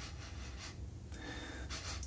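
Quiet room tone with a low steady hum, and a soft breath in near the end.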